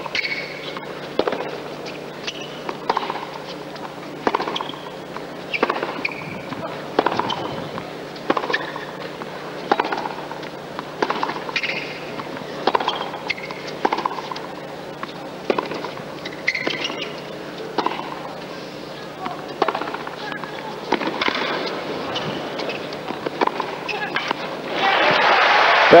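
Tennis rally: racket strikes on the ball come at a steady back-and-forth pace, about one a second, for some twenty seconds. Crowd applause swells near the end as the point is won.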